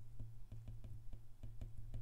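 Faint clicks of a stylus tip tapping on a tablet's glass screen while a word is handwritten, over a low steady hum.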